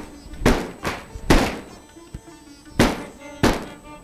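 Knife chopping through raw pork and knocking on a plastic cutting board, four sharp thunks at uneven intervals, over faint background music.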